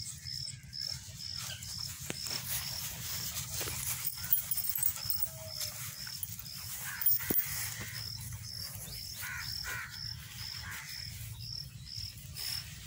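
An insect chirping steadily, about three short high chirps a second, with low rustling and a few sharp clicks as a small puppy moves about in grass; the loudest clicks come about four and seven seconds in.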